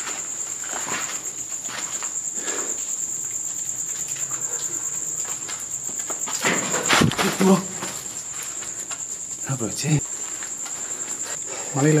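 Crickets chirring at night in a steady, high-pitched trill. Brief louder voice-like sounds come about seven seconds in and again near ten seconds.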